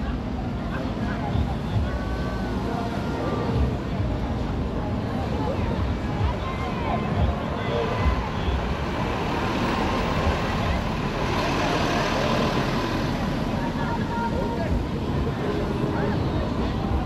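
Road traffic passing along a street, with a steady rumble and a vehicle passing loudest about ten to thirteen seconds in, mixed with distant voices.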